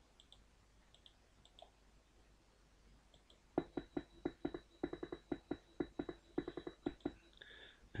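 d-lusion RubberDuck software bass synthesizer, a TB-303-style emulation, playing its step-sequenced pattern of short, rapid bass notes, about five a second, quietly. The pattern starts about three and a half seconds in and stops about a second before the end, after a few faint clicks.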